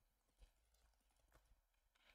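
Near silence with a few faint computer keyboard key clicks, the clearest about half a second in.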